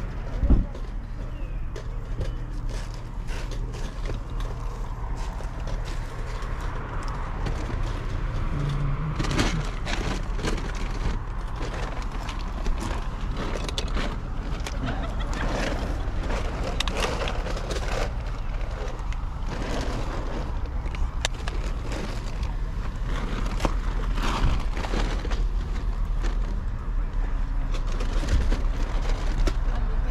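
Plastic toy figures being handled and turned over, giving scattered light clicks and rustles over a steady low rumble.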